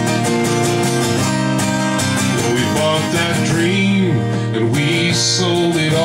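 Acoustic guitar strummed in a steady rhythm, accompanying a folk song. A singing voice comes in over the guitar about halfway through.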